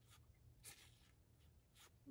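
Near silence with a few faint, soft rustles: a small cut-out letter being slid into the pocket of a plastic pocket chart.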